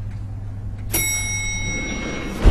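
An elevator's arrival chime dings once about a second in and rings on, over a low steady hum.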